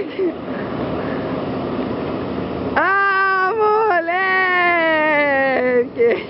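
Inline skate wheels rolling over paving for the first few seconds, then a long drawn-out shouted call, held for about three seconds and sliding down in pitch.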